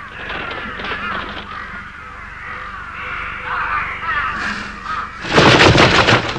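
A flock of crows cawing, with many calls overlapping. Near the end comes a loud rush of noise lasting about a second.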